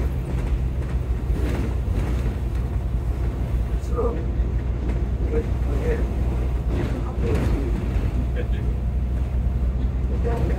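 Upper-deck cabin sound of a Volvo B9TL double-decker bus on the move: its six-cylinder diesel engine runs with a steady low drone under road noise. Faint passenger voices come through now and then.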